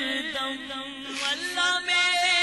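Men's voices weeping aloud in long, wavering, chant-like cries during a supplication to God, dipping a little mid-way and rising again near the end.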